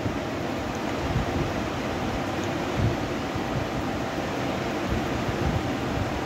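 Steady room noise: a constant, even hiss with no speech.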